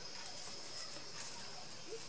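Quiet, steady high hiss with faint rustling of satin ribbon being handled and picked up.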